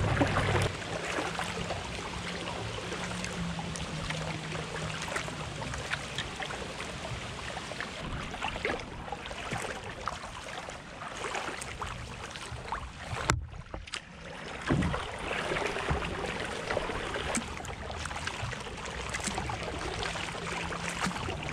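Kayak paddling: the paddle dips and drips with small splashes, and water washes along the hull in a steady rush. The sound drops away briefly about two-thirds of the way through.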